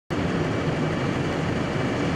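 A house's roof eave burning in full flame, a steady loud rushing noise of the fire with a low hum beneath it.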